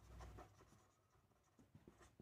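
Faint strokes of a pen writing on paper, mostly in the first half second, then near silence.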